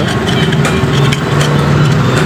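Yamaha Mio Sporty scooter's small single-cylinder engine idling steadily, with a constant low hum.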